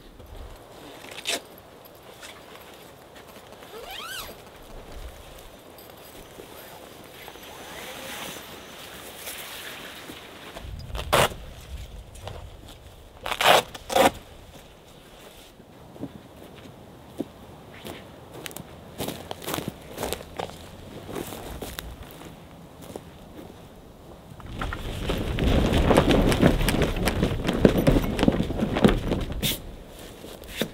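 Setting up a vehicle-mounted roll-out canvas awning: scattered sharp clicks and knocks from its poles and fittings, with footsteps. In the last few seconds the handling gets louder and denser as the canvas is unrolled.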